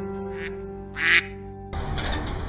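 Two duck-like quacks, the second louder, over a guitar music track with sustained notes. Near the end the music stops and a steady noisy background takes over.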